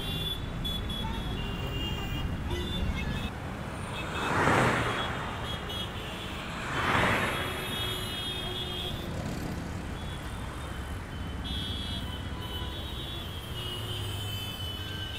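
Steady city road traffic, with two vehicles passing close by, each swelling and fading away, about four and a half and seven seconds in.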